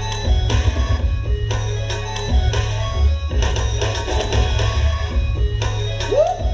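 Loud music with a heavy bass beat played over an arena sound system, the music a breakdancer dances to in a battle.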